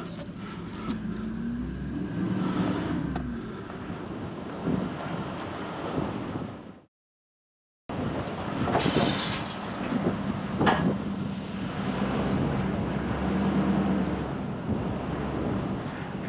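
GMC pickup truck engine running as the truck is driven up a car-hauler trailer's ramp, its pitch rising and falling early on as it is revved. After a brief dropout near seven seconds the engine goes on, with a single sharp knock about ten and a half seconds in.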